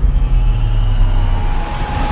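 A loud, steady low rumble with a faint thin high tone above it, part of a cinematic soundtrack's sound design.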